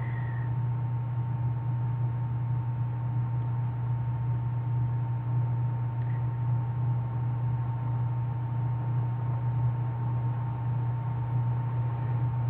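Steady low electrical hum with a faint hiss and a thin high whine underneath, unchanging throughout. This is the background noise of the voice-over recording; the store's own sound is muted.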